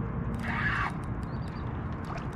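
Spinning fishing reel giving a short rasp about half a second in while a heavy fish is played, over steady wind and water noise.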